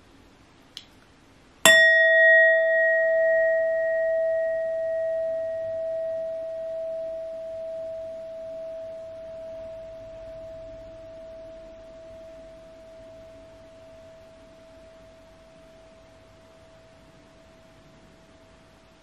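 Brass singing bowl struck once with a wooden striker a little under two seconds in, after a faint light tap. It rings with one clear tone that wavers gently and fades slowly, still faintly sounding at the end.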